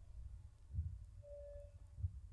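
Quiet microphone background: a faint low hum, with a brief faint steady tone a little past the middle.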